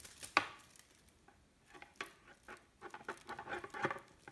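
Kittens scuffling on a plush cat bed: irregular scratches and soft taps of paws and claws on fabric, with a sharp one just after the start and a busy flurry near the end.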